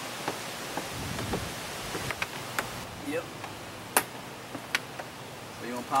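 Scattered small clicks and taps of a Phillips screwdriver and plastic door trim as a screw is taken out from under a car door's pull handle, with one sharper click about four seconds in.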